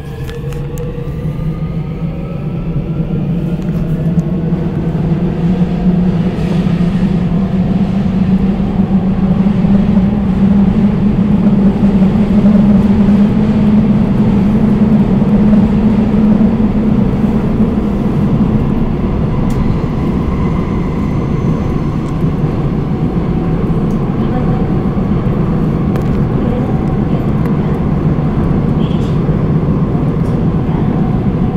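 Seoul Metro Line 5 subway train heard from inside the car as it pulls away: a whine rises in pitch over the first few seconds while the running rumble grows louder, then the train runs on steadily at speed.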